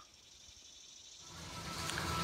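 Faint background noise: nearly quiet at first, then a steady hiss and hum of indoor room ambience swelling in over the second half.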